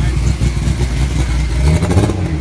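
Steady low rumble of vehicle engines running nearby, with faint voices in the background.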